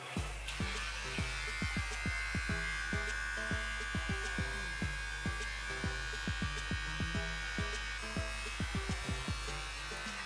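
Electric hair clippers running with a steady buzz as they cut the back of a synthetic-look straight lace-front wig. Background music with a beat plays underneath.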